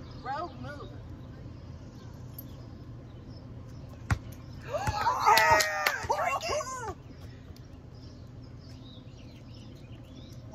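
One sharp knock about four seconds in, then a woman's excited shrieking and whooping for about two seconds as she catches the beer can off the dropping basketball.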